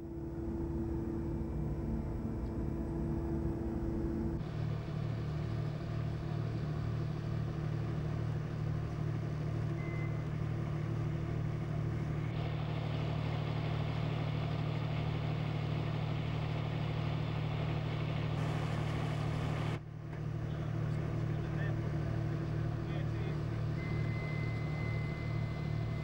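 A steady low engine drone that shifts in tone a few times and drops out briefly about twenty seconds in.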